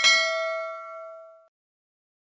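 A single bright bell-like ding, the notification-bell chime sound effect, ringing out once and fading away over about a second and a half.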